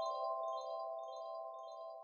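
Tail of an outro jingle: a held chord with short, high, chime-like notes repeating several times a second above it, fading away.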